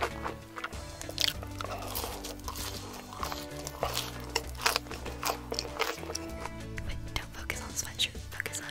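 Crisp biting and chewing of fried food, French fries, as a run of irregular crunches, over background music with a steady bass line.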